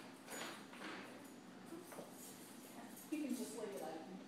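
A short, indistinct voice near the end, the loudest sound here. Before it come a soft rustle in the first second and a single light knock about two seconds in.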